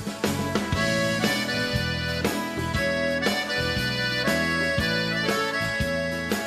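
Piano accordion playing a melodic instrumental solo over the band's backing, with a steady beat.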